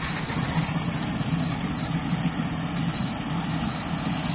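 New Holland 8070 combine harvester running steadily while harvesting rice: a continuous engine and machinery drone with no change in pace.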